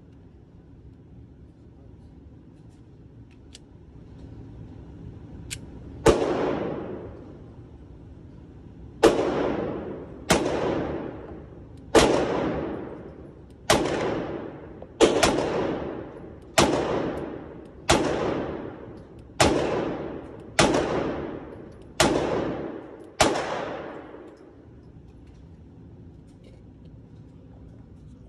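A 9mm Glock 43X pistol fired about a dozen times in an indoor range. The first shot comes about six seconds in. After a short pause the rest follow at a steady, deliberate pace of about one shot every second and a half. Each shot is a sharp crack with an echoing tail.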